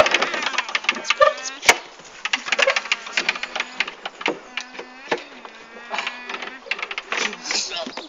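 Young people's voices calling out and chattering, with several sharp knocks as they climb over a playground play car, and a low steady hum in the middle few seconds.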